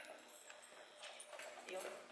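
Soft footsteps of a person and a dog walking together on rubber matting, with a faint murmured voice near the end.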